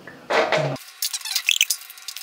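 A brief vocal sound, then a spatula scooping sticky, rum-soaked dried fruit in a steel bowl: a run of small wet clicks and crackles with a short squeak around the middle.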